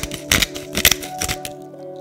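Pepper mill grinding peppercorns over a bowl: a few sharp crunching cracks about half a second apart, over steady background music.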